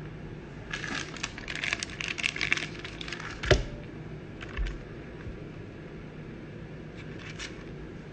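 Thin plastic card sleeve crinkling and crackling as it is handled and a trading card is slid into it, with one sharp knock about three and a half seconds in and a softer thud a second later.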